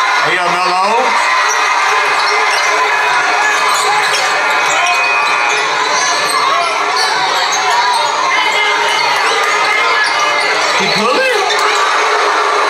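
Game audio from a crowded indoor basketball gym: a steady crowd din with a basketball being dribbled on the hardwood. A voice calls out briefly just after the start and again about a second before the end.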